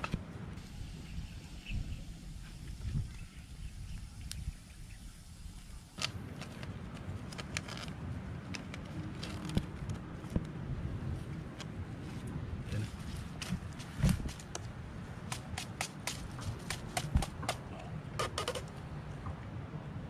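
Hands working twine around the bamboo slats of a crab trap: scattered small clicks and rustles of the wood and string over a steady low rumble.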